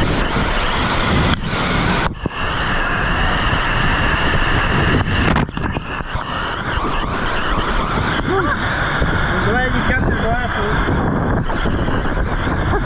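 Water rushing and splashing around an inflatable raft as it slides down a water-slide flume, with wind buffeting the microphone. The sound dulls suddenly about two seconds in, and dips again briefly about five seconds in.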